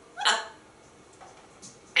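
African grey parrot giving one short call that rises in pitch, about a quarter second in.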